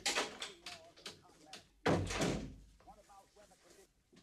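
A door slams shut about two seconds in, after a few knocks and clicks, with faint voices around it.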